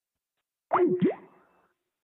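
A short cartoon-style boing sound effect about 0.7 s in, lasting about half a second: a quick downward pitch sweep followed by an upward one, with a steady hum-like tone under it.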